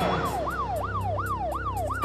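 Police siren in fast yelp mode, its pitch sweeping up and down about three times a second, over a steady low hum.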